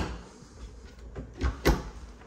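Cabinet doors being swung shut: a sharp click right at the start, then two knocks about a quarter second apart, a second and a half in.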